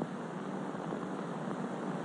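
Steady hiss of an old film soundtrack, with no other sound.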